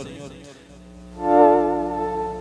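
Electronic keyboard sounding a sustained chord with vibrato, starting about a second in and slowly fading, over a steady low hum.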